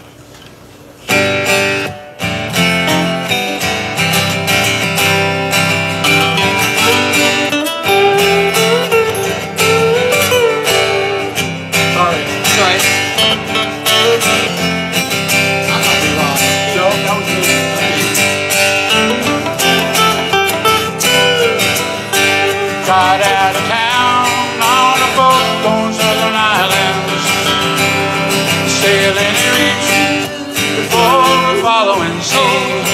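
Two acoustic guitars playing an instrumental intro, coming in suddenly about a second in. Strummed chords run underneath a melody line that moves above them.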